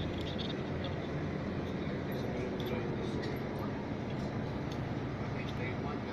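Inside a moving bus: a steady low rumble of engine and road noise, with a faint tone rising in pitch for a couple of seconds about a second in as the bus picks up speed.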